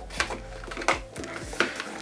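Soft background music with three light clicks and rustles of a sturdy cardboard box being handled and opened.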